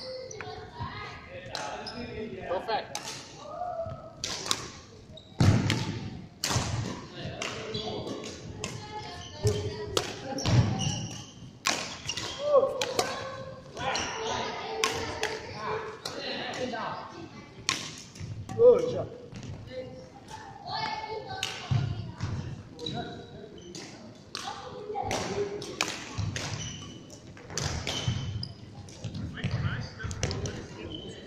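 Badminton play on a wooden sports-hall court: irregular sharp racket-on-shuttlecock hits and thuds of footsteps on the floor, echoing in the large hall, with indistinct voices in the background. The loudest impacts come about five and a half seconds in and about eighteen seconds in.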